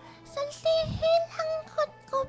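A very high-pitched voice held on drawn-out notes in several short phrases, with soft background music underneath.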